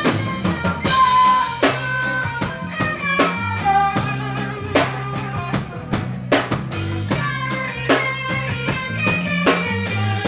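Live reggae band playing: a drum kit with steady bass drum and snare hits, a bass guitar, and guitars carrying pitched lines over the beat.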